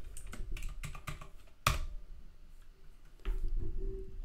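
Keystrokes on a computer keyboard: a quick run of key clicks, then one sharper key press about a second and a half in. A short low hum follows near the end.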